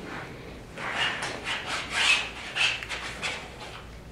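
Palette knife scraping oil paint across canvas in a run of about nine quick strokes starting about a second in, a few of them giving a short squeak.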